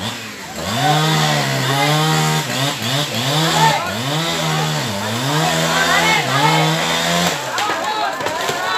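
Two-stroke chainsaw revved hard over and over, its pitch climbing to full throttle, holding, then dropping back, as it cuts wood. It stops shortly before the end.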